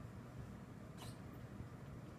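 Quiet room hum, with one brief high squeak about a second in.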